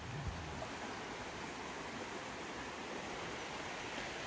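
Pigeon River rapids rushing: a steady, even rush of water.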